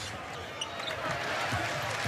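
Basketball being dribbled on a hardwood court, with arena crowd noise underneath.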